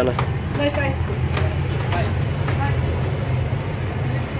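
Background chatter in a busy diner, with faint voices over a steady low hum.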